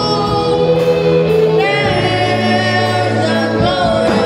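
Live gospel song, amplified: a boy singing lead into a microphone, with a man's voice and other singers joining, over a band with keyboard bass and drums. The voices hold long notes, and the bass note changes about halfway through.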